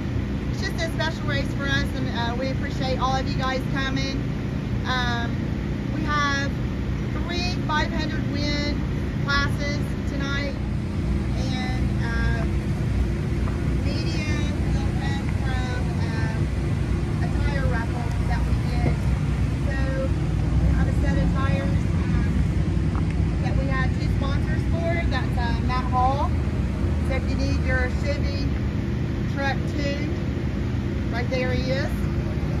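A solo voice singing the national anthem, with held and gliding notes, over a steady low engine hum.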